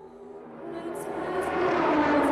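Race-circuit ambience: a rushing noise of distant racing engines that swells steadily in loudness, with a couple of short high ticks about a second in.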